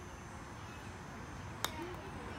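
A single sharp click of a minigolf putter striking the ball, about one and a half seconds in, over faint outdoor background noise.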